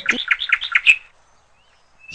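A small bird chirping: a quick run of about eight short, high chirps within about a second.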